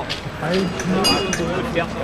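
People talking, the words not clear, with a brief high metallic clink about a second in.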